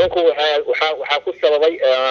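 Speech only: a person talking without pause.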